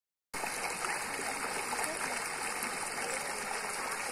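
Water gushing steadily out of the end of a PVC pipe into a shallow muddy puddle, a constant splashing rush.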